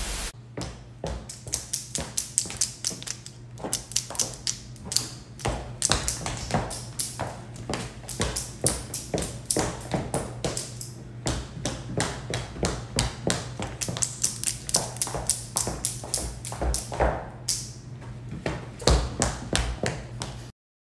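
Rapid clicking and tapping from high heels on a hard floor and long nails, several sharp clicks a second throughout. A brief burst of static hiss comes at the start.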